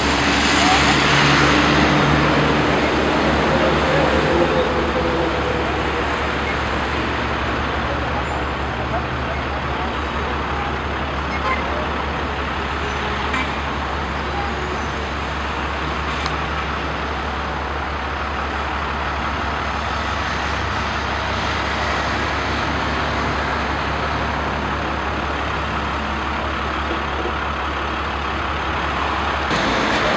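Steady road traffic noise from a busy city street, with voices faintly mixed in.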